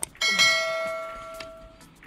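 A single bell-like chime struck once, ringing with several clear tones and fading out over about a second and a half: the notification-bell sound effect of a subscribe-button animation.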